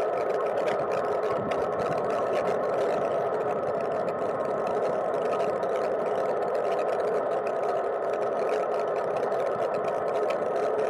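Cargo bike riding along a wet paved lane: steady tyre and wind noise carried through a camera case hard-mounted to the bike's frame, with many small ticks and rattles from the frame and case.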